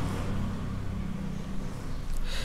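A steady low hum in the background.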